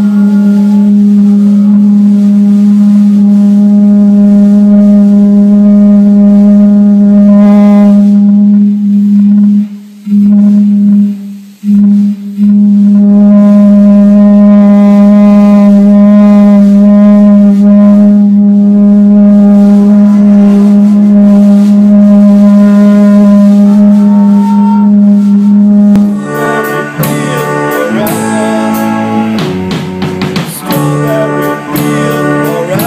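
One low note held as a loud, steady amplified drone with a stack of overtones, cutting out briefly twice about ten and eleven and a half seconds in. Near the end a band comes in with drums, electric guitar and keyboard.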